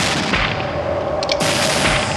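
Revolver shots, two about a second and a half apart, each a sharp crack with a short ringing tail, over a steady low tone.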